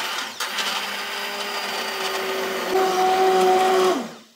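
Immersion hand blender running in a pot of soup, puréeing the cooked peppers and tomatoes: a steady motor whine that switches on suddenly, gets louder about three seconds in, and winds down as it is switched off at the end.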